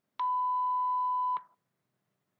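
A single steady electronic beep, a bit over a second long, that cuts off sharply: the cue tone between dialogue segments that signals the interpreter to begin.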